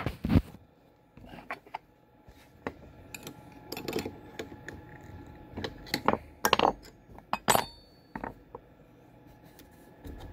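Metal clicks and clinks of wrenches and router bits being handled while the bit in a CNC router's collet is changed, a scattered string of knocks with a short ringing clink about seven and a half seconds in.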